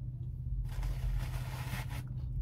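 A nearby truck idling, heard from inside a parked car as a steady low hum. From about half a second in, a scraping rustle lasts a little over a second.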